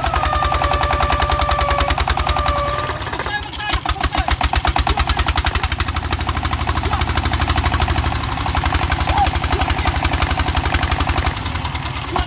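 Single-cylinder diesel engine of a công nông farm vehicle running hard under load, with a rapid even chug, as the vehicle strains with its wheels stuck in mud; the beat dips briefly a little past three seconds and then picks up again. Over the first three seconds a drawn-out shout is held on one steady note.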